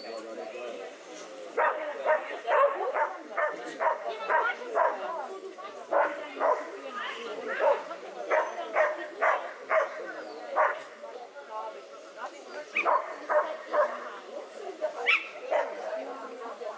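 A dog barking repeatedly in short, quick bursts, in clusters with a brief lull partway through.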